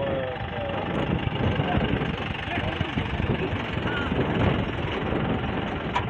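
Men's voices calling out over a steady, dense outdoor rumble of noise while a team of workers hauls on a rope.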